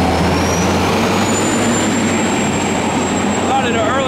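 A heavy road vehicle passing close by: a loud, steady engine rumble with a thin high whine that rises over the first second, holds, and falls away near the end.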